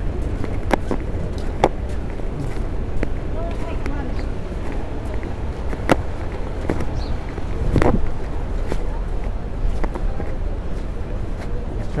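City street ambience heard through a body-worn camera in a jacket pocket: a steady low traffic rumble with sharp clicks and knocks from the camera rubbing and bumping in the pocket as its wearer walks, the loudest a knock about eight seconds in. Faint voices of passersby come through now and then.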